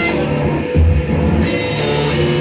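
A live rock band playing loud music, with guitar to the fore over a steady bass.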